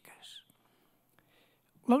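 A man's speech into a microphone pauses: a soft breathy trailing sound, then near silence with one faint click, and he starts speaking again near the end.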